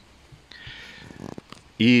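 A man's breath drawn in during a pause in his speech, with a faint low vocal hum, then his speech starting again near the end.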